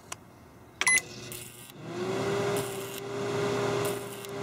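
A short beep about a second in, then a Panasonic inverter microwave oven starts running: a steady hum with a buzz. Its high-voltage inverter board is shorting and arcing.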